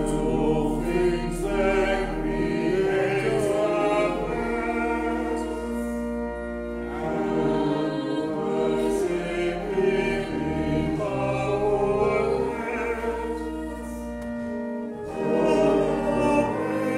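A hymn sung by a choir, with sustained chords and steady bass notes under the voices.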